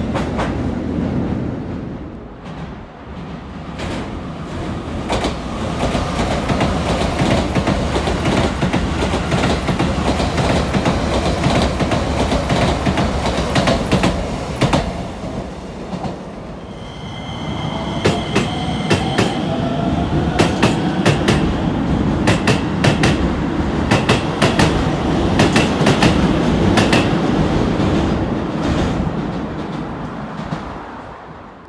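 Keisei electric trains passing through a station one after another, wheels clattering over the rail joints. The sound eases off about two-thirds of the way through, then the second train, a Skyliner express, brings a short high whine and a fast run of rail-joint clicks.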